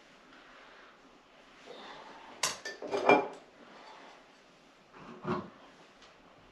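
Small ornaments clinking and knocking as they are handled and set on a wooden wall shelf: a quick cluster of clicks about two and a half to three seconds in, the loudest at the end, and one more knock about five seconds in.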